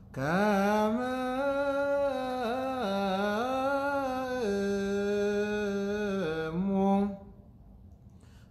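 A man's solo voice chanting Ge'ez liturgical chant in the Ethiopian Orthodox style, one long drawn-out phrase whose pitch rises and falls slowly, breaking off about seven seconds in.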